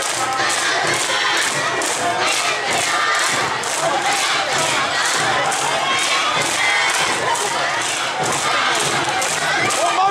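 An Awa Odori dance troupe shouting its rhythmic dance calls (kakegoe) over the festival band's steady, quick metallic beat, about three strikes a second, typical of the kane hand gong.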